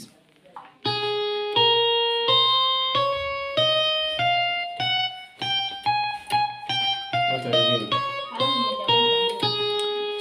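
Electronic keyboard playing the G major scale one note at a time: up one octave in even steps, then back down to the starting G.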